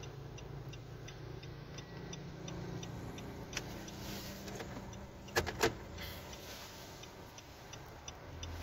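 Cabin sound of a Nissan Navara's diesel engine running while the pickup is driven, a steady low hum, with a turn-signal indicator ticking faintly about three times a second. Two sharp clicks sound a little past halfway.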